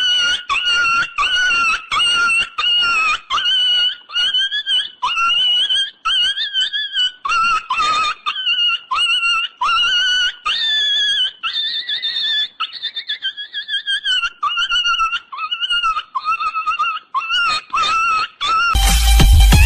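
A comedic background track made of a run of short, high-pitched squeaky calls, about two a second, each bending up or down in pitch.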